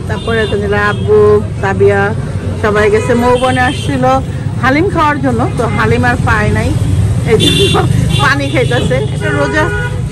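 A song with a singing voice plays without pause, its long held notes gliding up and down, over the steady low hum of a vehicle. A short, high horn toot sounds about seven and a half seconds in.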